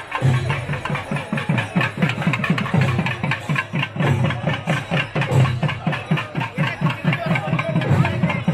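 Festival procession drums beating a fast, even rhythm of about five strokes a second.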